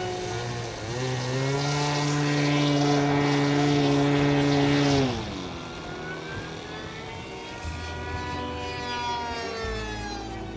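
Radio-controlled model aircraft engine revving up about a second in, holding a steady high note for about four seconds, then dropping away. A fainter engine note follows that slowly rises and falls in pitch.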